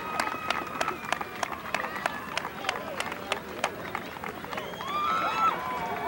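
Hand clapping from a small group, sharp separate claps a few times a second, over a murmur of crowd voices. About five seconds in, high-pitched voices call out.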